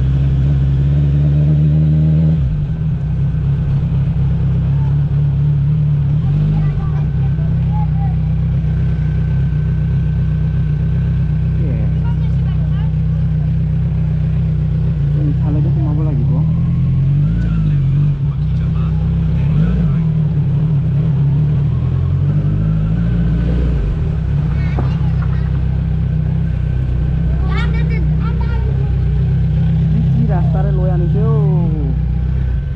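Motorcycle engine running at low road speed, a steady low drone throughout; its higher engine note drops away about two seconds in as the throttle eases. Faint voices are heard now and then.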